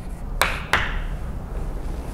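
Chalk striking a chalkboard twice, two sharp taps about a third of a second apart, over a steady low room hum.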